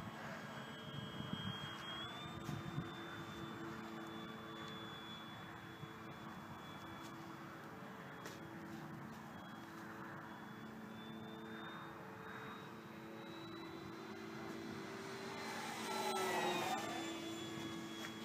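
Electric brushless motor and propeller of a 1700 mm FMS Corsair RC warbird in flight: a steady propeller hum with a thin high motor whine. It grows louder about sixteen seconds in as the plane passes closer, its pitch dropping as it goes by.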